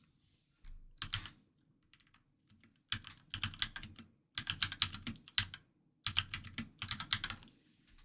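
Typing on a computer keyboard: a few keystrokes about a second in, then several quick runs of keystrokes through the second half as a search query is entered.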